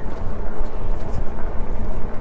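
Wind buffeting the microphone of a camera riding along on an e-bike: a loud, uneven low rumble.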